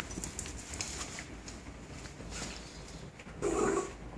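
West Highland white terrier puppy playing with a rope toy: light scattered clicks and rustles, then a short dog vocalization about three and a half seconds in.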